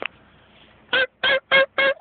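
Wild turkey yelping: a quick series of four short, even notes of steady pitch, starting about a second in.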